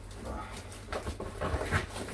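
Plastic and paper packaging rustling and crinkling as a parcel is unwrapped by hand, with a few short high squeaks about a third of a second in and near the end.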